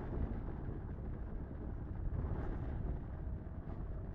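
Steady low background rumble, with a few faint handling sounds as a battery is fitted into a plastic phone sleeve case.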